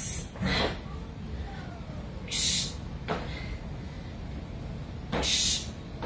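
A person exhaling hard in short, hissing breaths, about five of them spread across a few seconds, from exertion while doing dumbbell renegade rows in a high plank.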